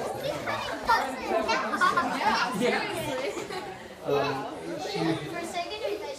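Several children's voices chattering and calling out over one another, with no single clear speaker.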